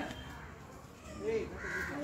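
A short, harsh bird call near the end, with a brief voice just before it.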